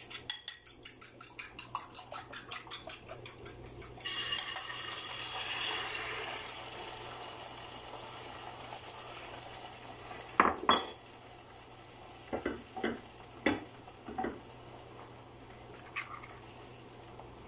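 Fork beating eggs in a bowl, about four or five quick clinks a second. About four seconds in the beaten egg goes into the hot oiled pan and sizzles steadily, the sizzle slowly dying down. Past halfway come two sharp clinks of the fork against the bowl, then a few lighter knocks.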